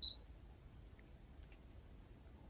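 A Tanita body-composition bathroom scale gives a single short, high electronic beep as it starts weighing someone standing on it. After the beep there is only faint room tone.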